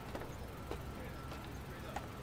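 Faint footsteps on a wooden plank bridge deck: soft hollow knocks about every half second over a steady low outdoor rumble.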